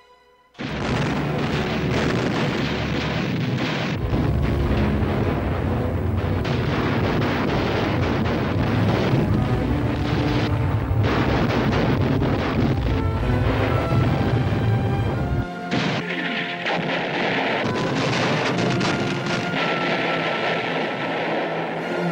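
Battle sound effects of explosions and artillery fire, starting suddenly about half a second in and continuing densely and loudly. The deep rumble drops away about two-thirds of the way through, leaving higher, thinner noise.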